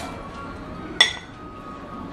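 A single sharp clink of kitchenware about a second in, ringing briefly, as cashews are added to a stainless-steel mixer-grinder jar.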